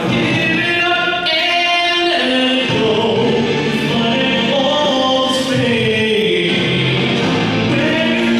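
A man singing a ballad live into a handheld microphone over recorded backing music, played through the PA of a large hall.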